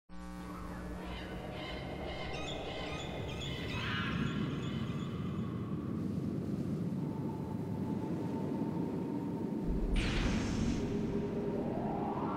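Ambient electronic intro music: sustained synth tones over a low drone, with a sudden swell about ten seconds in and a rising sweep building near the end.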